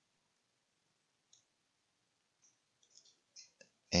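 Faint clicks of a stylus tapping on a tablet screen while handwriting, a few light ticks, most of them near the end.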